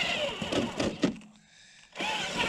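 Electric motor and geared drivetrain of an RC crawler truck whining as it drives through snow, the pitch wavering with the throttle, then easing off for a moment just past halfway.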